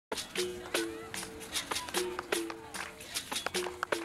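Capoeira music: a berimbau sounding two alternating notes, the higher then the lower, each held briefly, with sharp pandeiro hits. The pattern repeats about every second and a half.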